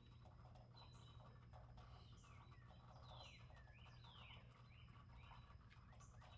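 Near silence: faint outdoor evening ambience with soft high chirps and a few falling whistle-like calls in the middle, over a low steady hum.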